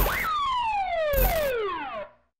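Siren sound effect in a TV logo sting: the last rise and fall of a fast wail, then the pitch sliding steadily downward as it winds down. There is a short whoosh at the start and another a little past a second in. Then the sound cuts off.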